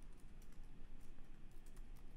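Computer keyboard typing: a quick, irregular run of key clicks as a word is typed.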